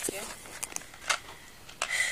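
A few short, sharp clicks and knocks of handling noise, the loudest about a second in.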